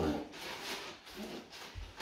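Plastic shopping bag rustling as groceries are taken out of it, with a soft low thump near the end.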